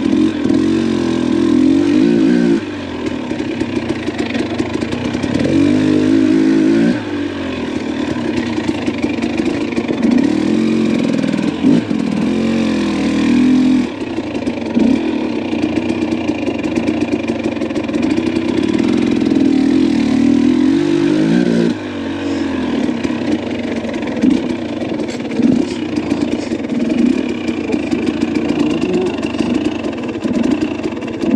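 Dirt bike engine running as the bike is ridden along a rocky single-track trail, its note rising and falling with the throttle. Louder stretches of a few seconds alternate with quieter ones.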